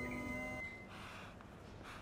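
A bee smoker's bellows giving one soft, faint breathy puff a little over half a second in.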